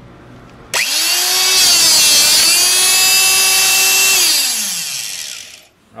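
Electric motor of an SHP-20 portable electro-hydraulic hole punch starting with a sudden high whine, running steadily while the punch drives through quarter-inch steel plate, then winding down with falling pitch near the end.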